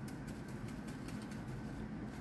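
Quiet room tone: a steady low hum with faint, light clicks of handling at the paint tray.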